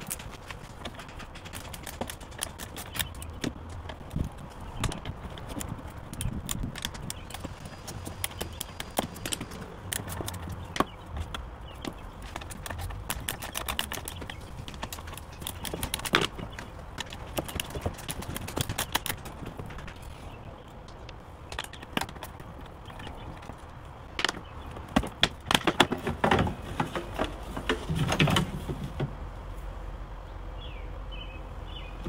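Irregular clicking and knocking of hand tools and plastic parts as the small bolts holding a jet ski's gauge cluster are undone, with a denser run of clicks near the end.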